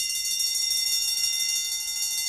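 An electric bell ringing continuously: a rapid, high, steady ring with no break.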